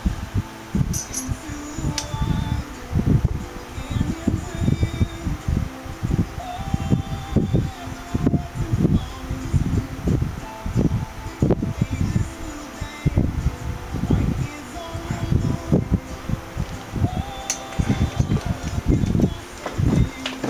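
Wind buffeting the microphone in irregular low rumbling gusts.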